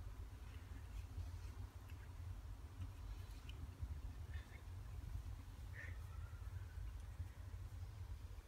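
Faint, scattered short bird chirps, a second or more apart, one ending in a brief falling note, over a steady low rumble.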